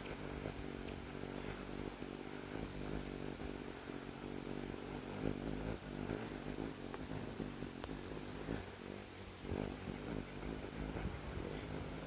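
Hummingbird wings humming as the bird hovers at a feeder: a steady low buzz with several tones stacked together, with a few faint clicks.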